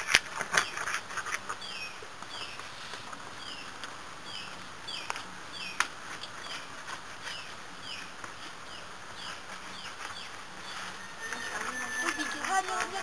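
Sharp cracks as a stick scores and snaps a hardened sheet of peanut brittle, with one more crack about six seconds in. From about a second and a half in, a bird gives high, falling chirps over and over at a steady pace, a little under two a second.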